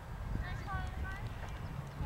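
Faint, distant voices calling out on an open playing field, a few short calls near the middle, over a steady low rumble.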